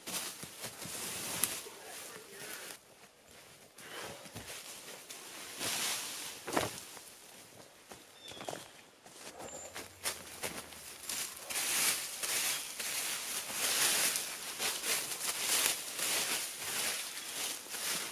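Dry forest leaf litter and twigs rustling and crackling as they are scraped up by hand and dropped onto a fleece jacket, an uneven stream of crunches that grows busier and louder in the second half.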